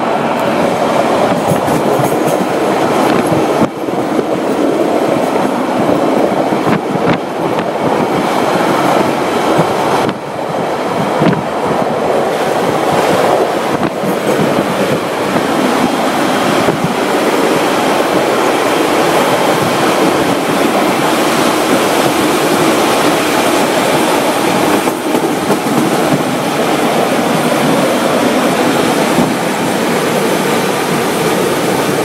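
TranzAlpine passenger train running along the track: a steady rumble of wheels on rails, with a few knocks from rail joints.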